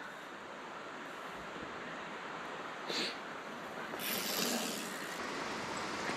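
Mountain bike tyres starting to roll on a dirt trail over a steady hiss of outdoor noise, with a short high squeak about three seconds in.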